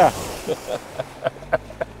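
Toyota Land Cruiser SUV driving through a shallow muddy water crossing: a rush of splashing water that fades within half a second, then a series of short knocks as it rolls on over rocky ground, with a low engine hum underneath.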